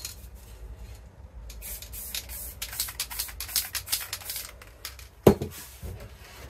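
Aerosol spray paint can hissing in a string of short bursts as blue paint is sprayed, followed by a single thump near the end.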